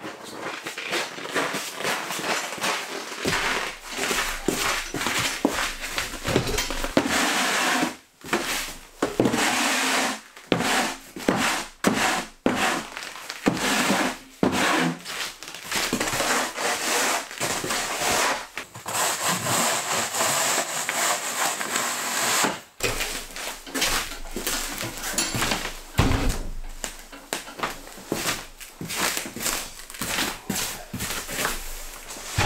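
A shovel blade scraping across a plywood floor in repeated rough strokes with short pauses between them.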